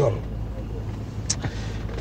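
A pause in speech with a steady low hum underneath and one brief soft hiss a little past halfway.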